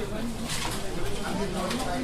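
Outro of a hip-hop track after the rapping has stopped: a dense, noisy mix with indistinct voices.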